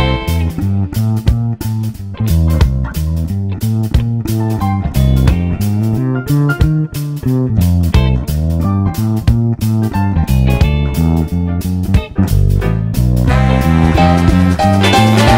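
Rock and roll band playing an instrumental break: guitar lead over a bass line moving note to note and a steady drum beat. About thirteen seconds in, the full band's sound grows fuller and brighter.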